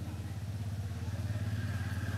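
A small engine running steadily with an even, low pulsing hum, which cuts off suddenly just after the end.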